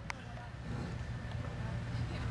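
Quiet outdoor background with a steady low rumble, and a single sharp click just after the start.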